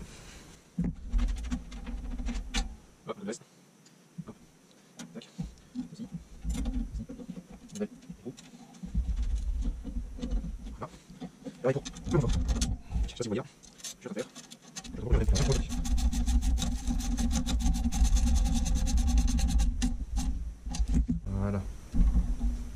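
Metal parts and hand tools handled while a mudguard stay is bolted onto a Solex 3300 moped frame: scattered clicks and knocks, then about six seconds of fast, even clicking near the end.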